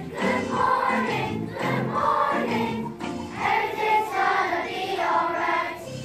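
A large group of children singing together as a choir, in sung phrases of held notes.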